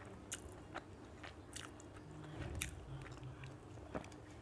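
Faint close-up sounds of a person chewing a mouthful of rice and chicken curry, with scattered soft, wet mouth clicks and smacks.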